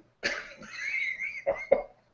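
A man laughing over a video call: breathy, wheezy laughter with a thin wavering whistle in it, ending in two short sharp bursts.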